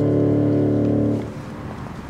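Final chord of a carol held on a Yamaha Motif electronic keyboard, released a little over a second in. Quieter outdoor background rumble follows, like distant traffic.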